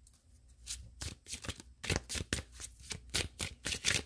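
A deck of tarot cards being shuffled by hand: after a quiet moment, a quick, irregular run of card flicks and snaps, several a second.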